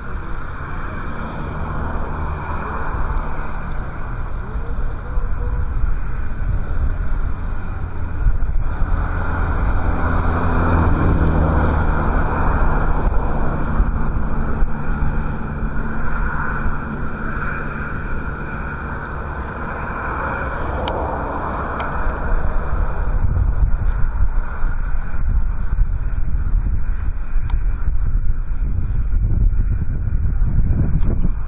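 Strong wind buffeting the microphone, a steady low rumble with gusts. A low engine hum joins it from about nine seconds in to about twenty.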